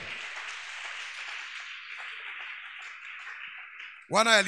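Congregation applauding and acclaiming in a large hall, a steady spread of clapping that eases off slightly toward the end.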